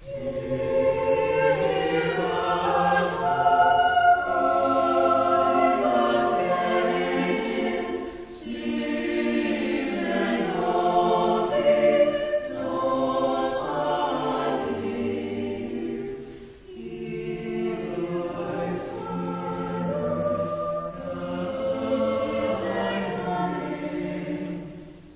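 A small mixed chamber choir of women's and men's voices singing unaccompanied in harmony. Sustained chords run in phrases, with short breaks about eight and sixteen seconds in.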